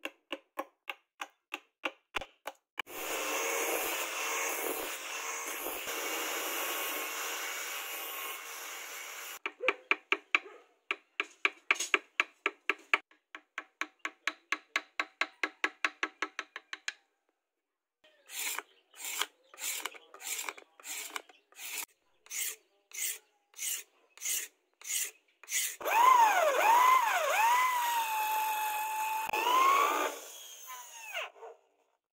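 Hand work on a wooden knife handle: a quick series of strikes, then steady scraping, then rapid even rasping strokes, then slower strokes. In the last few seconds a power tool whines loudly, its pitch dipping and recovering as it bores into the end of the handle.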